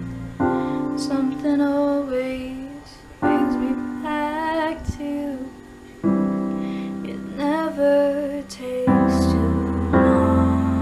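A woman singing a slow ballad with piano accompaniment. A piano chord is struck about every three seconds, and her held notes carry vibrato.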